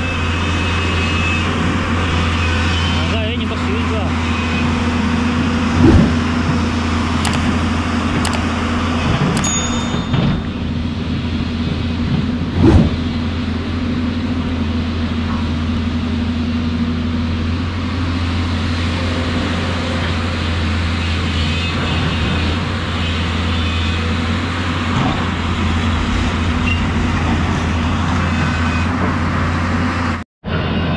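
Hyundai hydraulic excavator's diesel engine running steadily, over the rushing of a river. Two brief thumps stand out, about six and thirteen seconds in.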